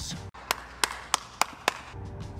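Five short, sharp clicks about a third of a second apart: an edited-in tick sound effect as rating stars pop up one by one on screen.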